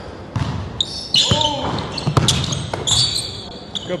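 Basketball bouncing on a hardwood gym floor as a player dribbles, with a few short high sneaker squeaks on the court.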